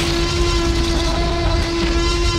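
A loud horn-like blast held on one unchanging pitch over a deep rumble: the closing hit of a movie-trailer soundtrack.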